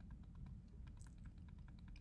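A computer keyboard's keys tapped in a quick, faint run of small clicks, several a second, as the cursor is stepped across the code.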